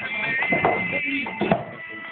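A recorded song playing back through headphones held up close to the microphone.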